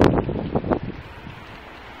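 Wind buffeting a phone's microphone, loud at the start and dying down within about half a second to a steady low rush, with a few short knocks.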